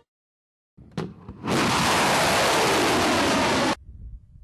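A missile launching from a truck-mounted launcher: a sharp crack about a second in, then the rocket motor's loud, steady rushing roar for about two seconds, which cuts off suddenly near the end.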